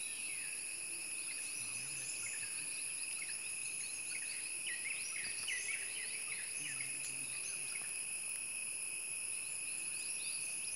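A forest chorus: insects keep up a steady, high-pitched drone of several even tones, while many birds give short, quick chirping calls over it, most densely around the middle.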